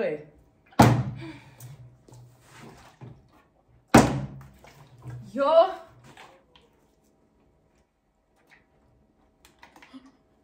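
Two sharp knocks about three seconds apart, each with a short ringing tail, followed by a brief shout.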